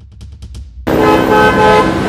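Four quick clicks, then about a second in a vehicle horn honks, held for about a second with a brief break, over street traffic noise.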